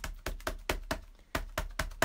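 A VersaFine Clair ink pad patted repeatedly onto a clear pen-nib stamp to ink it evenly, making a quick run of light taps, about four or five a second, with a short gap just past the middle.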